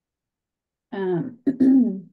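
A woman clearing her throat about a second in, in two short parts.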